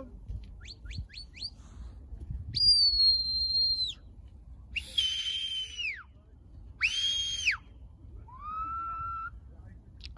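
Shepherd's whistle commands to a herding dog working sheep: a quick run of four short rising chirps, then four longer held whistle notes that rise, hold and drop off, the last one lower in pitch.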